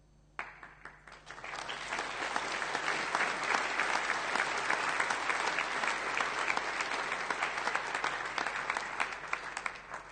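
Audience applauding: the clapping starts about half a second in, swells over the next second, holds steady, and dies away near the end.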